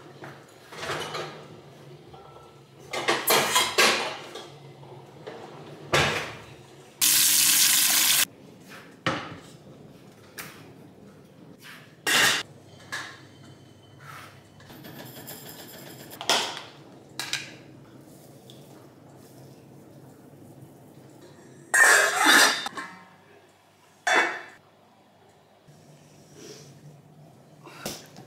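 A stainless steel cooking pot and other kitchenware being handled and set down: a string of separate clanks, knocks and clinks. About seven seconds in there is a loud rushing hiss lasting about a second.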